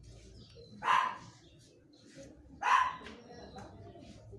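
A dog barking: two single barks, about two seconds apart.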